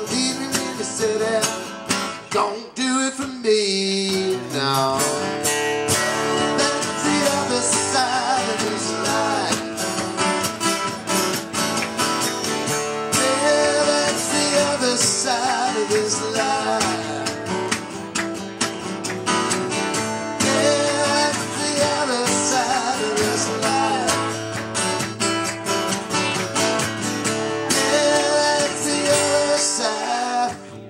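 Live acoustic band: three acoustic guitars strumming together under a sung lead vocal. The playing drops back briefly about three seconds in, then carries on steadily.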